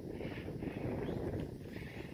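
Quiet outdoor background between words: a low, even rumble with no distinct event.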